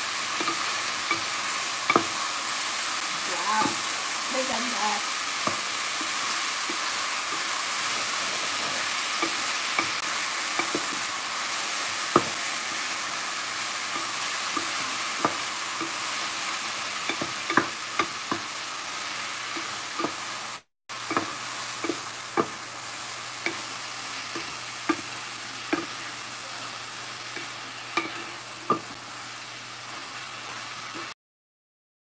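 Chopped tomatoes and onions sizzling in a stainless steel frying pan while a spatula stirs them: a steady hiss broken by scattered sharp clicks of the spatula against the pan. The sound drops out for a moment about two-thirds of the way through.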